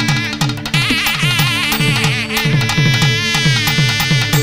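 Instrumental interlude of a Malayalam Ayyappa devotional song: a high, wavering melody line over a steady drone and quick low drum strokes that drop in pitch, about four a second.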